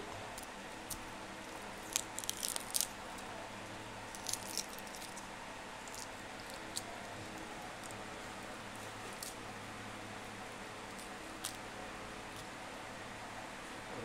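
Faint crackling of eggshell as a cooked egg is cracked and peeled by hand: short clusters of clicks about two and four seconds in, then a few scattered single clicks.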